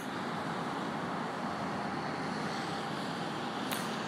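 Steady, even background noise, like a hiss or distant traffic, in a pause between speech, with one faint short click shortly before the end.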